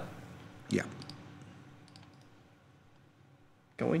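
A few faint clicks at a computer, from working its controls.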